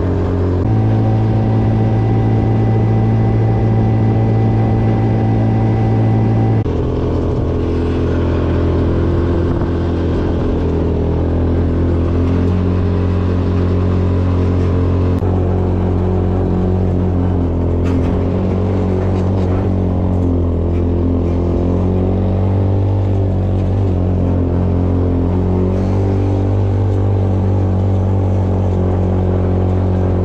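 A Polaris Hammerhead GTS 150 go-kart's small single-cylinder four-stroke engine running under load while driving. It holds one steady pitch for the first six seconds or so, then shifts and rises and falls with the throttle.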